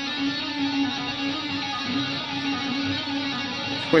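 Electric guitar playing a two-handed tapping lick: a fast, unbroken run of smoothly joined notes, a right-hand tapped note alternating with the fretting hand cycling over three notes of a pentatonic shape.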